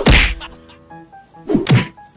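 A loud thump right at the start, then a second smack about a second and a half in, with faint music between.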